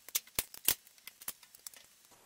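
A quick series of sharp plastic clicks and knocks as a USB-C cable and plug are handled and swapped at the back of a small display. The two loudest come close together about half a second in, then lighter clicks follow for about another second.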